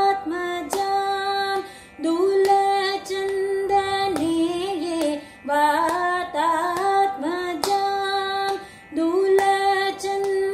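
A woman singing Carnatic vocal music solo, long held notes with ornamented slides between them, with short breaks for breath about 2, 5.5 and 9 seconds in.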